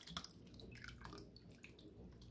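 Faint drips and soft splashes of cream of chicken soup thinned with water, poured from a bowl onto meatballs in a glass baking dish.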